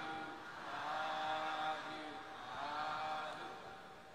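Faint Buddhist chanting voices, a few short held phrases that rise and fall in pitch.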